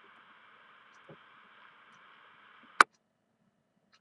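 Faint hiss of an open FM carrier on the 224.100 MHz amateur repeater, heard through a ham receiver between transmissions. The hiss ends near the three-quarter mark with one sharp squelch click as the carrier drops.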